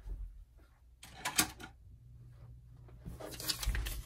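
Clicks and clatter of craft supplies being handled and put away, with a sharp knock about a second and a half in, then a longer rustle and low thump near the end.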